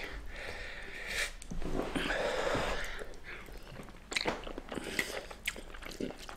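A person eating instant noodles: chewing and mouth sounds, with a few short clicks in the second half.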